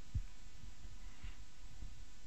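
Steady low room hum with soft low thumps of footsteps as a person walks across a lecture-hall floor. The strongest thump comes just after the start, and there is a faint scuff a little past the middle.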